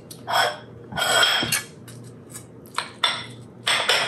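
A metal spatula scraping and plates clattering in about five short bursts as baked sandwiches are lifted from a glass baking dish and plated, over a low steady hum.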